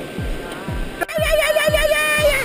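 A man making a loud warbling call through his cupped hands. It starts about a second in and lasts just over a second, a quick wavering pitched sound like a gobble. Background music with a steady beat runs underneath.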